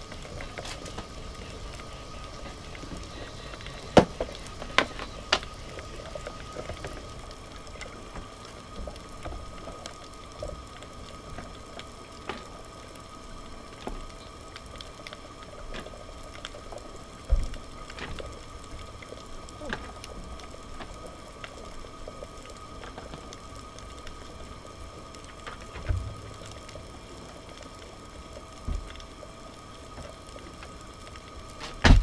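Lidded pot of sea water boiling on a propane stove: a steady hum with a thin constant tone, broken by a few sharp clicks and knocks, the loudest about four seconds in.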